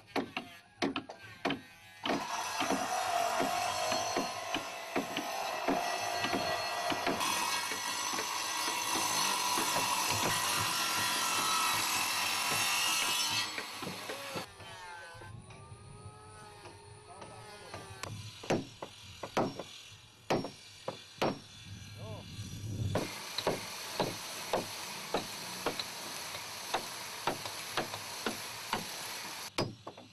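Woodworking at a wooden boat build. First comes a string of sharp chopping blows on timber, then a power tool runs steadily through wood for about eleven seconds and stops suddenly. After that come scattered knocks on planks, and near the end the power tool runs again for about six seconds.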